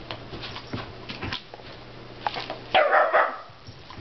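West Highland white terrier giving a short burst of play barking about three seconds in, while romping with a cat, with light scuffling and small clicks before it.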